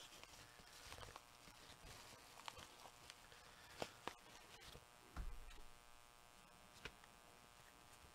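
Near silence with a faint room hum, broken by a few faint clicks and a short soft thump about five seconds in: small handling noises as a card and envelope are handled.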